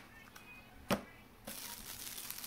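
One sharp knock about a second in as small boxed camera batteries are set down on a cardboard box, followed near the end by a soft rustle of plastic packaging being handled.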